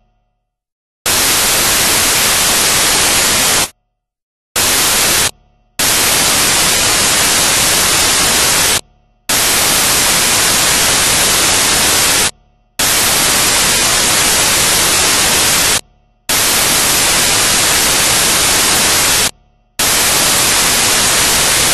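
Loud, even hiss of white-noise static, starting about a second in and cut off by short silent gaps roughly every three seconds.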